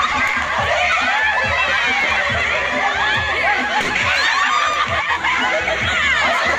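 A group of women laughing and shrieking together, many high voices overlapping without a break.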